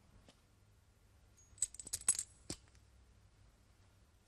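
Small metal pieces clinking and jingling in a quick run of about half a second, with a high ringing, followed by a single duller knock.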